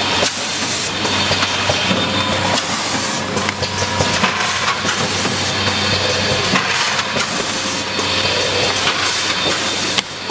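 Automatic pouch filling and sealing machine running: dense irregular mechanical clicking and clatter over a steady air hiss and a low hum.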